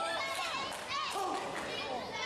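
A small crowd of spectators shouting and calling out over one another, many of the voices high-pitched like children's.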